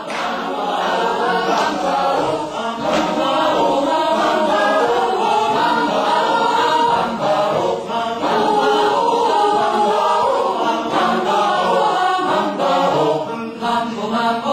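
Mixed choir of men's and women's voices singing together in harmony, a continuous chant-like song.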